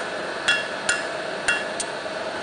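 Ball-peen hammer striking red-hot steel on an anvil while forging a chisel point: three sharp, ringing blows in under two seconds.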